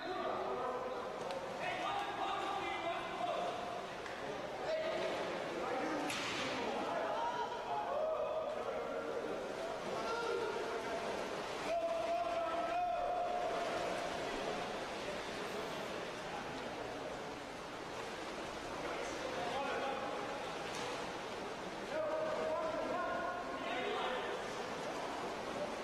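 Shouts from players and coaches ringing around an indoor pool hall during a water polo game, over a haze of splashing water, with a few sharp slaps about 6, 8 and 13 seconds in.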